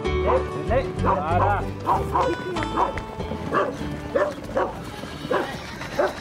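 Dogs barking over and over in quick, short barks, with background music fading out in the first couple of seconds.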